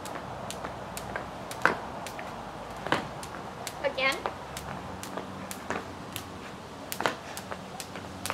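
Jump rope slapping a concrete patio as it is turned and jumped, a run of sharp ticks roughly two a second.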